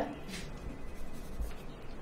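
Pen scratching on paper as a document is signed, with a short stroke about a third of a second in, over faint room tone.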